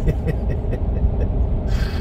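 Steady low road and engine rumble heard from inside the cabin of a vehicle driving along a road.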